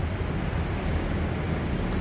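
Steady low rumble with a fainter hiss over it, even throughout with no distinct events.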